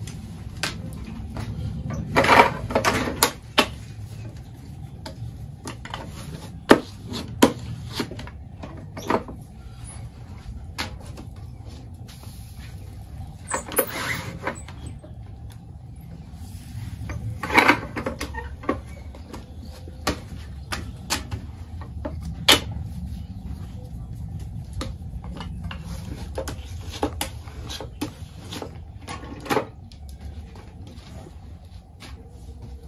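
Tortilla press being worked by hand: scattered knocks and clacks as the press is shut and opened and the dough is handled, with a few short, louder rustling bursts, over a steady low rumble.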